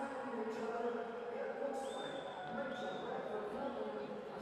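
Spectators and teammates cheering and shouting on the pool deck, many voices overlapping and echoing in a large indoor pool hall, with a shrill held call twice around the middle.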